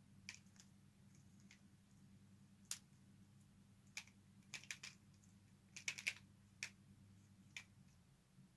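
Pyraminx puzzle being turned quickly by hand, its plastic pieces clicking in an irregular series of faint, sharp clicks, several in quick clusters, over a steady low hum.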